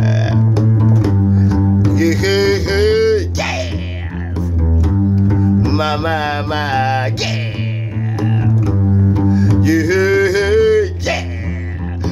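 Acoustic guitar played in a steady, repeating low groove, with wordless sung vocal runs coming in about every four seconds.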